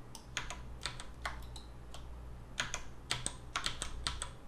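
Clicks of a computer keyboard and mouse being worked, scattered singly early on and coming more thickly in the second half, over a faint steady low hum.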